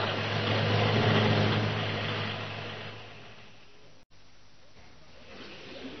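Sound effect of a van engine running and then dying away within about three seconds as the van rolls to a stop. The engine has been starved of fuel because its roof-mounted gas bag was punctured and has deflated.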